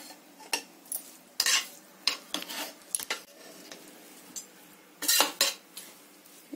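Metal spoon stirring cooked rice in a pot, scraping and knocking against the pot's sides and bottom in irregular strokes, loudest near the end.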